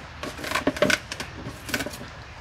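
Sea urchin shells being cracked and broken open by hand: a handful of sharp, brittle cracks and clicks, the loudest about a second in.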